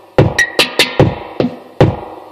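Korg Volca drum machine playing back a saved, looped beat: deep kick thumps and sharp snappy hits, several strokes a second in an even pattern.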